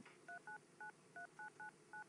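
Flip phone keypad playing touch-tone beeps as a number is dialled: seven short, faint two-note beeps in an uneven rhythm, one per key press.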